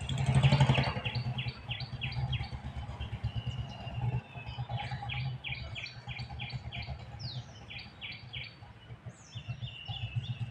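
Birds calling: a fast series of short repeated chirps, about four a second, with breaks between runs and a few higher down-slurred calls near the end. A brief loud rush of noise in the first second and a steady low rumble lie beneath.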